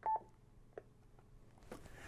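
A single short electronic beep from a Yaesu FTM-500D mobile transceiver as its main tuning knob is pressed on OK, confirming the completed firmware update. Faint clicks follow about a second in.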